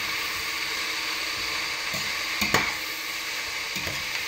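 Shredded red cabbage and onions sizzling steadily in hot oil in a large steel pot, being sweated. A sharp knock comes about two and a half seconds in, and a lighter one near the end.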